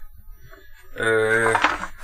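A man's drawn-out hesitation sound, a held "eee", starting about halfway through after a second of quiet room noise.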